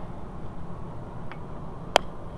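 Small clicks over a low steady hum as a nut is worked off a starter motor's battery post by hand: a faint one past the middle and a sharp, loud one just before the end.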